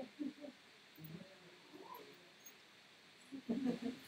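Faint, indistinct talking in a room, in short snatches, loudest near the end.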